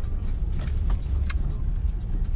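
Low, steady rumble of a car heard from inside its cabin, with a few faint clicks near the middle.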